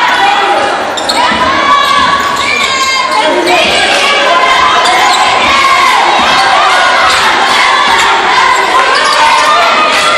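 Basketball being dribbled on a hardwood gym floor during live play, with players and spectators calling out in the gym.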